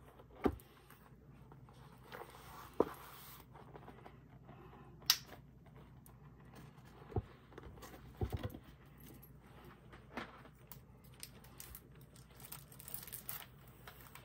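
Paper pads being handled on a craft table: a faint paper rustle with about seven scattered knocks and taps as the pads are lifted, moved and set down, with a quick run of taps about eight seconds in.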